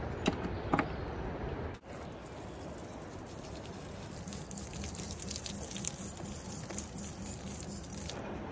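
Water spraying from a camper's outdoor shower sprayer onto a muddy hiking boot, a steady hiss that grows stronger about halfway through. A couple of light handling clicks come near the start.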